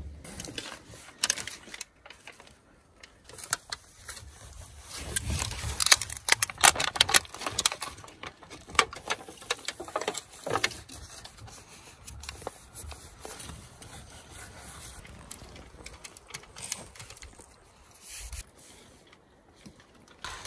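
Heavy-duty aluminum foil tape crinkling and scraping under a hand as it is pressed and smoothed along a water pipe, in irregular bursts of crackles, busiest in the middle.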